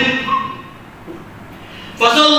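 A man preaching through a microphone ends a phrase in the first half second. A pause with faint room noise follows.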